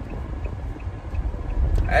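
Steady low road and engine rumble inside a moving car's cabin, with a voice starting near the end.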